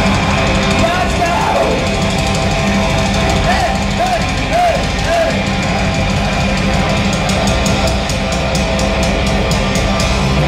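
Live heavy metal band playing loudly in a club, heard from the crowd: distorted guitars, bass and drums. Wavering high notes rise and fall about a second in and again in the middle, and rapid drum hits at about five a second come in near the end.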